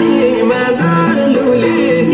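Nepali Bhailo folk song with a singing voice over instrumental accompaniment, its held notes stepping up and down at a steady pace.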